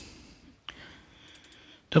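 A single computer mouse click about a third of the way in, against faint room tone.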